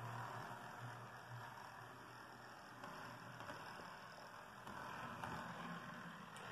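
Faint, steady hum and hiss of an OO gauge model diesel locomotive's motor and wheels running along the track at a brisk speed.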